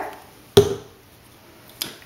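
A single sharp knock about half a second in, then a lighter click near the end, as plastic skin-care items are handled in front of the microphone.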